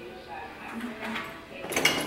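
Cable machine in use during a reverse curl: the cable runs over its pulley and the weight stack slides down as the bar is lowered slowly.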